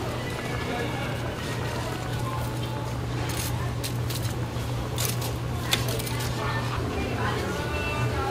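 Busy food-stall ambience: a steady low hum under faint background voices, with several sharp clicks about three to six seconds in as metal tongs work the fried food on a metal rack.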